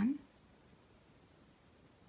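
A woman's spoken word ends at the very start, then near silence: quiet room tone.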